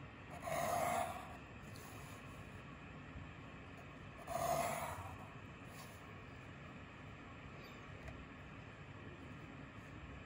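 HB graphite pencil drawn along a wooden ruler across paper, ruling a line: two strokes, each just under a second long, about half a second in and again about four seconds in.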